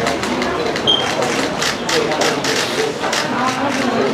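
Indistinct voices of people in the room, with camera shutters clicking again and again and a short high beep about a second in.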